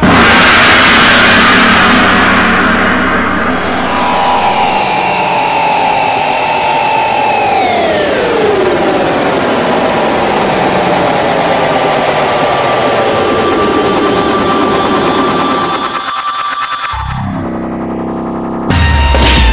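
Electronic film score or sound design. A loud burst of noise opens it and fades over a few seconds. A held tone then slides down in pitch under a dense whirring drone, which drops out briefly near the end.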